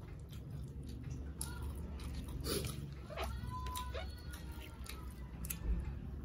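Close-up eating sounds: chewing and scattered small mouth and hand clicks as rice and vegetables are eaten by hand, over a low steady hum. A drawn-out tonal sound rises and falls about three to four seconds in.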